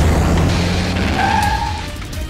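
Cartoon battle sound effects: a low rumble of an explosion for the first second and a half, then a short tyre screech of a vehicle peeling away, over background music.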